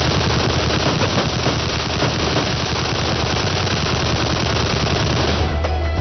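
Rapid automatic gunfire from an action-film soundtrack, a dense unbroken run of shots over a low music bed, breaking off about five and a half seconds in as the music comes back to the fore.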